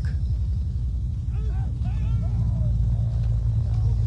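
Steady low rumble of idling vehicle engines, with faint background voices in the middle.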